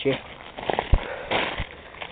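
Ice-coated twigs and brush crackling and crunching as someone pushes through with a handheld camera, with a dull bump about a second in.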